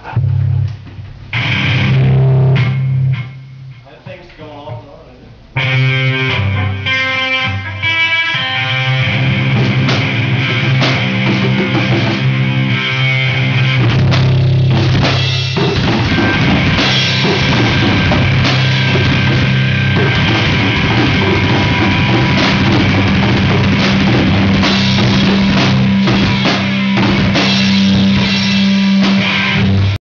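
Instrumental metal played live on guitar and drum kit. The music starts in short bursts with a quieter gap, then runs steadily from about six seconds in.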